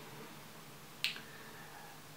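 A single short, sharp click about a second in, over faint room tone.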